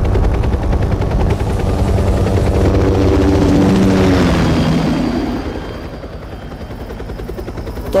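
Helicopter sound effect on a film trailer soundtrack: the rapid, even chop of the rotor with an engine whine, loud for about five seconds and then fading away as it passes.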